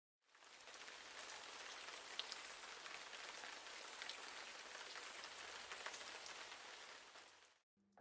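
Faint, steady hiss-like noise with a few light ticks, fading in just after the start and fading out shortly before the end.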